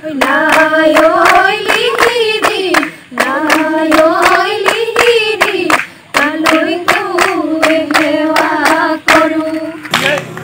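A group of women singing a Jeng Bihu song together, keeping time with steady rhythmic hand claps. The singing runs in phrases of about three seconds with short breaks between them.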